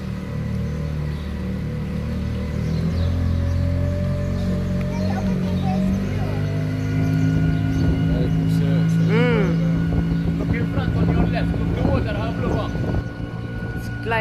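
Small tour boat's engine running steadily under the hull, its pitch stepping up about three seconds in and again about six seconds in as the boat speeds up.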